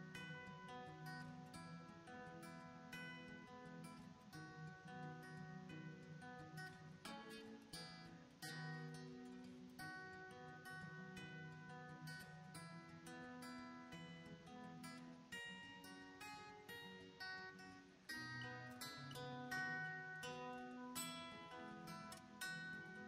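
Quiet background music: a solo acoustic guitar playing plucked notes and chords.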